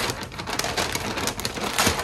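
Brown kraft paper crinkling and rustling as it is pulled off the roll and spread over a small table, a dense crackle of many small clicks.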